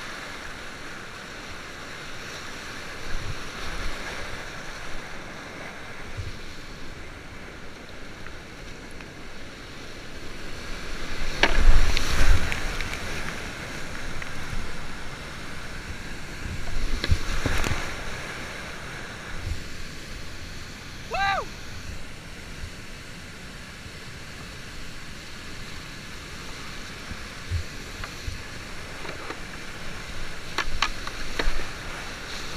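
Steady roar of high-volume whitewater rapids heard from the cockpit of a kayak, with waves splashing over the boat and paddle. Two loud crashing surges of water stand out, one a little before the middle and another a few seconds after it, as the boat punches through breaking waves and holes, and a brief shout rings out about two-thirds of the way through.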